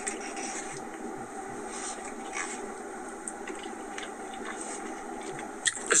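Steady background hum inside a car's cabin, with a few faint soft clicks and scrapes.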